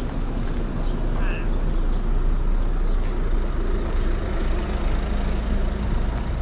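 Street ambience: a steady low rumble of vehicle traffic, with people's voices.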